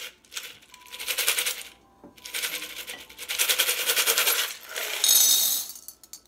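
Small metal charms rattled in a cup in two bouts of fast shaking, then tipped out clattering and jingling into a bowl near the end.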